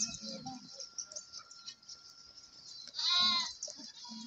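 A goat bleats once, briefly, about three seconds in, among goats feeding on freshly cut green fodder.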